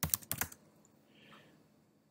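Computer keyboard keystrokes: a quick run of about half a dozen key presses in the first half second, a terminal command being typed and entered, then quiet.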